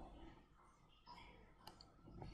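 Faint computer mouse clicks, a few in the second half, against near silence.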